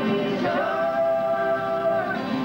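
A woman's and a man's voice singing together, holding a long note from about half a second in, over two strummed acoustic guitars.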